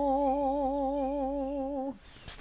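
A woman's unaccompanied voice holding one long note of a traditional Serbian folk song, with a slight wobble in pitch, breaking off just before the end.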